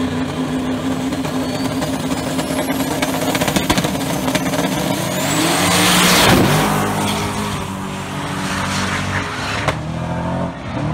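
Two no-prep drag cars launching off the line and racing down the track, engines at high revs, climbing in pitch. The sound is loudest about six seconds in as they pass close by, then drops in pitch and fades as they pull away.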